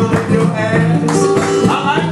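Acoustic guitars playing together in a live song, a steady, full sound of held and picked notes.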